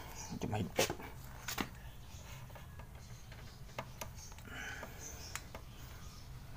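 Sparse light metallic clicks and taps of a small wrench on the exhaust-valve tappet adjusting screw and locknut of a Motorstar X110 engine, as the locknut is loosened to set the valve clearance. The clicks are loudest in the first two seconds, with faint low speech.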